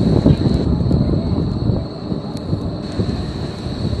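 Wind buffeting the camera microphone outdoors, a loud gusty low rumble over city-square background noise, with a faint steady high whine underneath.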